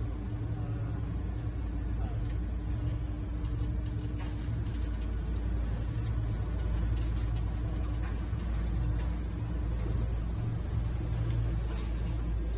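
Steady low rumble of assembly-hall ambience, with a faint hum and a few light scattered clicks of tools or parts.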